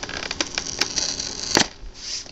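Clear plastic blister packaging crinkling and clicking as fingers pick at its edge, with one sharper click about one and a half seconds in.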